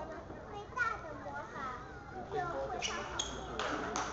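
Table tennis ball clicking sharply off the bats and the table in a fast rally, several quick hits near the end, over people talking in the background.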